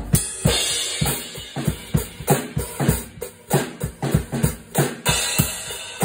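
Pearl drum kit with Meinl cymbals played in a free jam: a cymbal crash opens and its wash rings for about a second over the drum strokes, then a run of drum hits follows, with a second crash about five seconds in.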